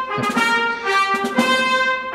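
Brass music: several brass instruments holding notes together, the chords changing about twice a second.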